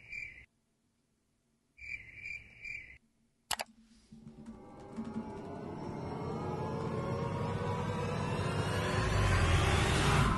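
Cricket-chirp sound effect, two sets of three quick chirps, the comic awkward-silence gag. A sharp click follows about three and a half seconds in, then a music riser that climbs in pitch and grows steadily louder over the last six seconds.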